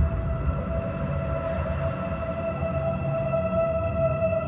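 Film soundtrack drone: one steady held tone with overtones over a low rumble, unchanging throughout.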